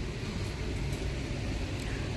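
Steady background noise of a retail store: an even low rumble and hiss with no distinct events.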